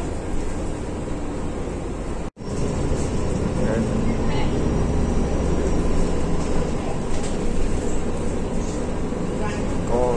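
Steady engine and road drone heard from inside a moving city bus, with a brief dead break a little over two seconds in.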